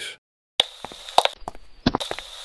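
A mystery noise in a cartoon: a low hiss with several sharp clicks and knocks scattered through it, starting about half a second in.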